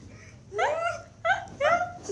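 A young woman's high-pitched laughter in three short bursts, each rising and falling in pitch.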